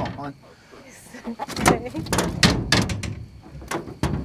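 A person laughing, with a run of short knocks and clatters several a second.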